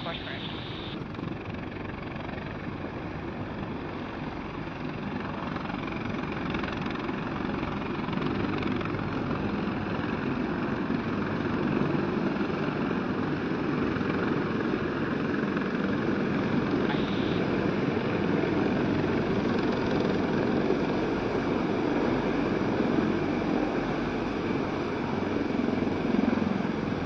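MH-53E Sea Dragon helicopters, their three T64 turboshaft engines and seven-blade main rotors, making a steady heavy drone that grows louder as they come closer.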